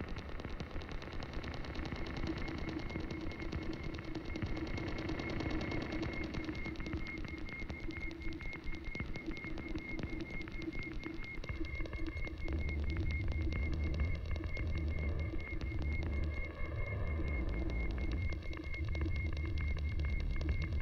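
No-input mixing board feedback: a high tone pulsing rapidly over a lower steady drone, with a deep rumble coming in about halfway through and carrying on under them.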